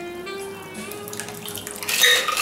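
A cocktail strained from a metal shaker into a martini glass: a steady trickle of liquid pouring. Background music with held, sustained tones plays under it.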